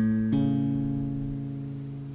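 Acoustic guitar: the root A, on the sixth string at the fifth fret, and its major third plucked a moment apart, then ringing together and slowly fading.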